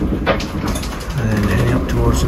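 A man's voice talking over a steady low rumble.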